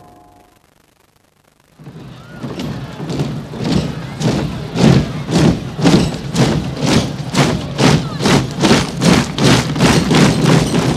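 Near silence for the first two seconds, then a rhythmic pounding beat starts and builds, quickening slightly to about two and a half beats a second: the opening of a film trailer's soundtrack.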